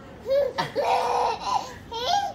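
Baby laughing in high-pitched bursts during a game of peekaboo: a short burst, then a longer one, with brief squeals near the end.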